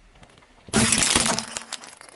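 Small coloured globe light bulbs cracking and shattering under a car tyre: a sudden loud run of sharp cracks just under a second in, dying away over about half a second.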